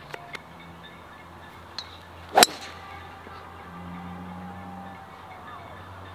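A golf tee shot: the club head strikes the ball once with a single sharp crack about two and a half seconds in, over faint open-air background.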